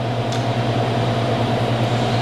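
Steady low machine hum with a little hiss above it. A faint short tick comes about a third of a second in.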